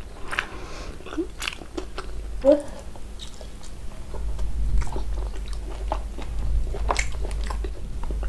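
Close-miked eating of mutton curry and rice by hand: biting and chewing with wet mouth clicks and lip smacks, scattered irregularly, with a short voiced sound about two and a half seconds in.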